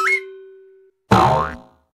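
Cartoon sound effects: a wobbling, rising whistle ends and a held tone fades out, then about a second in comes a single springy boing.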